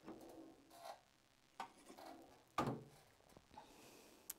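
Faint scrapes and knocks as an enameled copper piece on a mesh firing rack is slid into a small Paragon SC-3 enameling kiln and the kiln door is shut. The sharpest knock comes about two and a half seconds in.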